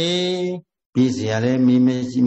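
A Burmese Buddhist monk's voice intoning in a drawn-out, sing-song manner, typical of recited passages in a sermon. It holds one long syllable, breaks off into a short silence about half a second in, then carries on with more held, steady-pitched syllables.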